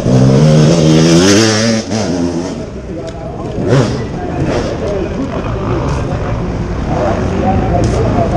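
Enduro motorcycle engine revving hard as the bike passes close by on the dirt track. It is loudest in the first two seconds or so, then drops away.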